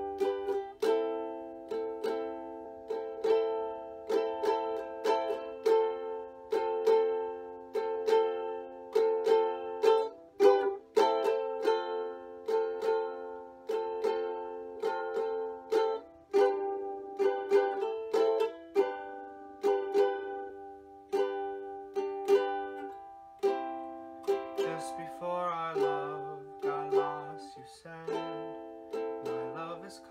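Solo ukulele playing chords in a steady rhythm in a small room. A man's singing voice joins over it in the last quarter.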